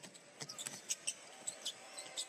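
Basketball being dribbled on a hardwood arena court during play: a few sharp, irregular taps over low arena background noise.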